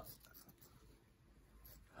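Faint scissors cutting through fine black mesh netting, with a few soft snips and the rustle of the netting being handled.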